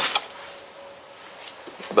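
A sharp click with a few lighter ticks right after it near the start, then quiet with a faint steady hum underneath.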